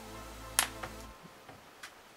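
Faint background music that stops just over a second in, with a sharp click about half a second in and a few lighter clicks: a fingernail prying at the edge of a smartphone's snap-on back cover.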